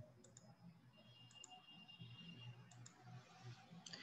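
Near silence: faint room tone with a few soft clicks, some in quick pairs.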